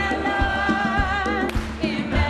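A large group of people singing together, holding long notes, over a backing track with a steady bass beat; the held note changes about one and a half seconds in.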